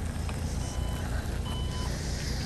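Two short electronic beeps, about a second apart, over the steady low rumble of a vehicle.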